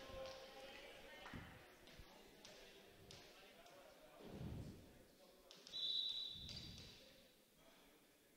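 Faint gymnasium sound between rallies: a volleyball bounced a few times on the hardwood court before the serve, and a short high whistle about six seconds in.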